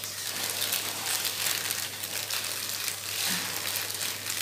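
Foil-lined takeaway food wrappers crinkling and rustling as they are unwrapped by hand, in an irregular crackle.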